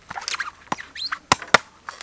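A cleaver chopping into a coconut's husk: about four sharp knocks, the loudest just past the middle, with short high chirping squeaks between them.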